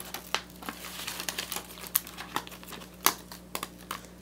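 Blue adhesive stencil sheet being peeled back from its backing and handled, crinkling with irregular crackles and snaps, the sharpest about three seconds in.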